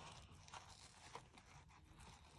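Near silence, with faint rustling and small clicks of a satin-type ribbon and cardstock being handled as the ribbon is looped into a bow.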